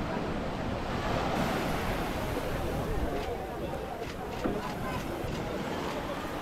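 Small waves washing onto a sandy shore, with wind buffeting the microphone and a crowd's voices chattering in the background.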